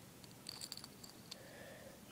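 Faint clicks and taps of small metal fishing-lure parts, a split ring and hook, being handled and worked by fingers, a few in quick succession about half a second in and one more a little later.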